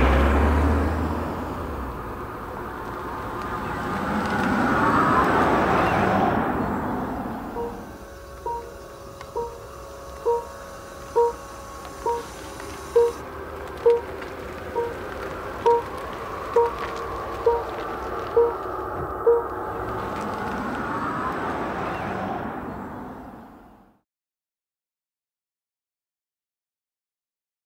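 Mercedes-Benz EQC electric SUV's AVAS e-sound: a synthetic hum that swells and glides up and down in pitch as the car moves off. It is followed by a run of short electronic warning beeps, about one a second for some twelve seconds, typical of the reversing alert, over a steady hum. The hum swells once more, then everything cuts off suddenly near the end.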